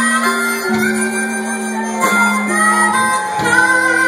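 Amplified blues harmonica, cupped against a microphone, playing long held notes that step from pitch to pitch over a live band with bass guitar, with a few sharp drum beats.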